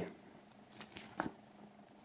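Faint handling of a paper CD booklet as it is opened out, with soft rustles and one short sharp tap or snap a little over a second in, over a low steady room hum.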